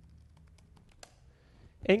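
Light computer keyboard typing: a quick run of faint key clicks, then a single sharper click just after a second in.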